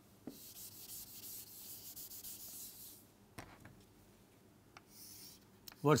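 Chalk scraping on a chalkboard as a long straight line is drawn: a faint, scratchy hiss for about three seconds, then a shorter chalk stroke near the end.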